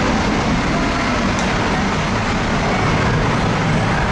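Jet airliner's engines at takeoff power, a steady, loud roar of exhaust blast heard from behind the aircraft.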